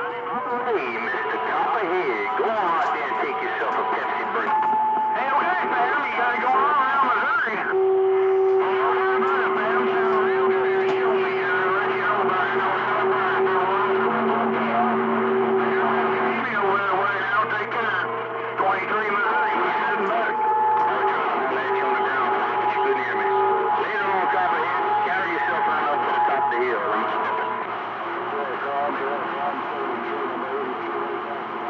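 CB radio receiving a crowded AM channel with several stations transmitting over one another: garbled, overlapping voices with steady whistling tones held for several seconds, where their carriers beat against each other.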